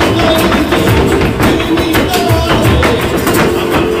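Live flamenco music: Spanish guitars playing under a dense run of sharp, rapid taps from the dancer's footwork.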